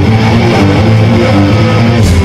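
Punk band's distorted electric guitar and bass playing a riff of stepping low notes, loud through a live PA, as a song starts.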